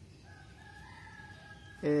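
A faint, drawn-out bird call in the background, about one and a half seconds long, rising slightly and then holding its pitch. A man's voice starts speaking just before the end.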